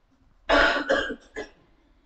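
A man coughs: one rough cough about half a second in, followed by a short second catch a moment later.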